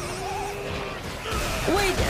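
Anime episode soundtrack playing back: background music under a character's voice, with one long drawn-out pitched cry in the first second.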